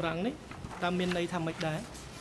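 A person's voice making a few short, level-pitched syllables, quieter than the speech around it.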